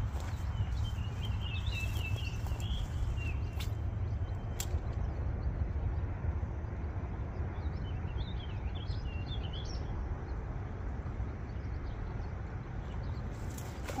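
Wind rumbling on the microphone, with a small bird chirping in two short runs, one early and one about halfway through. Two sharp clicks come a second apart around the four-second mark.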